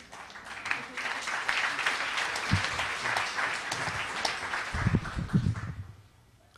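Audience applauding. The clapping builds up within the first second and dies away near the end, with a few low thumps along the way.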